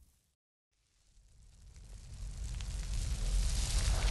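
Fireball sound effect: after a brief silence near the start, a noisy rush of flame with a deep rumble swells steadily louder.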